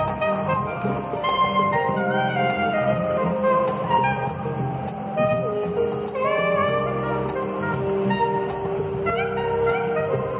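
Soprano saxophone playing a melody, with a couple of notes scooped up into pitch about six and nine seconds in, over a steady low accompaniment.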